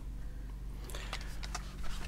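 Low steady hum of a small room, with a few faint light clicks and rustles of a cardboard seasoning packet being handled about halfway through.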